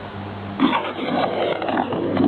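Shortwave radio reception noise: a steady hiss with a low hum, then from about half a second in a louder, rougher rush of static.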